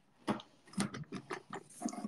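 Handling noise from a phone being adjusted by hand: scattered short taps and rubs against its microphone.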